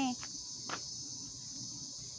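Steady, high-pitched chirring of insects in the grass, with one brief click less than a second in.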